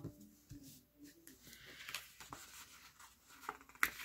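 Quiet paper handling: fingers pressing a sticker onto a planner page and moving the paper, with faint rustling and a few small clicks.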